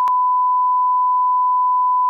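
Bars-and-tone test signal: a single steady pure beep, unbroken and at one level, with a short click just after it begins.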